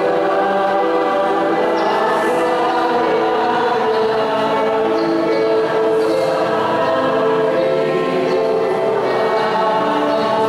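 A choir singing a church hymn, with long held notes at a steady loudness.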